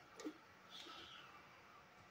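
Near silence: room tone, with a faint click near the start and a faint brief hiss about a second in.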